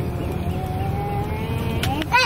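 Tour boat engine running with a steady low rumble. Over it sits a thin held tone that slowly rises in pitch.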